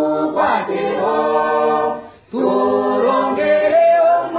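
A man singing unaccompanied, holding long, drawn-out notes, with a brief break for breath a little over two seconds in.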